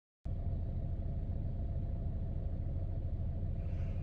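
Steady low rumble of a car heard from inside the cabin, with a faint steady hum above it. It begins abruptly a moment in.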